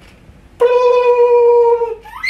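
A man's falsetto voice holding one high, steady note for about a second and a half. It starts abruptly about half a second in and sags slightly in pitch at the end: a silly sustained cry.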